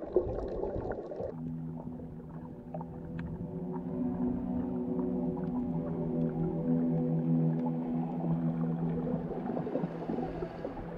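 Camera audio under water: a second of churning, bubbling water, then a steady low hum made of several held tones, the motor of a boat heard through the water.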